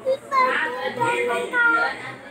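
A small child speaking a short, high-pitched phrase.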